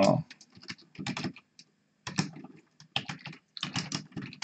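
Computer keyboard being typed on: quick key clicks in short irregular runs, with a brief pause about two seconds in.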